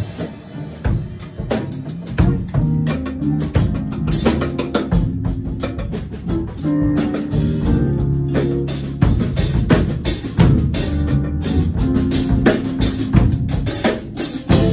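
A live band playing a rock groove: drum kit hits keep a steady beat under held electric guitar notes.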